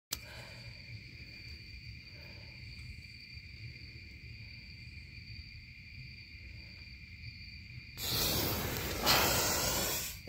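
Gunpowder igniting with a sudden loud hiss about eight seconds in, flaring louder a second later and fizzing on as it burns. Before that there is only a faint steady high tone.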